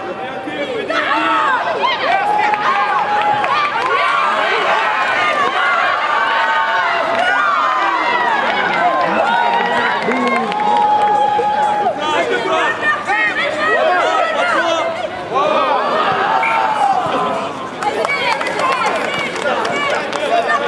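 Many voices shouting and calling out over one another at a rugby sevens match, with some long drawn-out calls among them.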